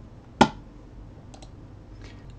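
Computer mouse button clicks: one sharp click about half a second in, then two faint quick clicks about a second later.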